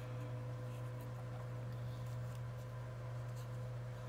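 Steady low electrical hum of the room, with faint rustling and scratching as ribbon and a paper flag on a stick are handled; no clear scissor snip.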